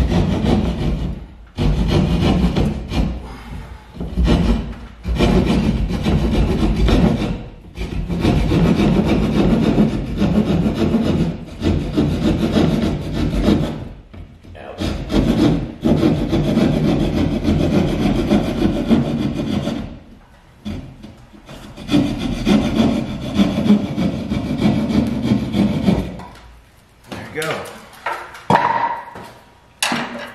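A hand jab saw sawing a round hole through the ceiling in quick back-and-forth strokes, in spells of a few seconds with short pauses between. The sawing stops a few seconds before the end, and a few short, separate sounds follow.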